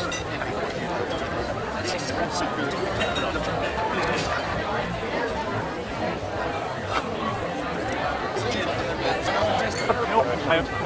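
Steady indistinct chatter of many restaurant diners, with a few brief clinks of cutlery on plates.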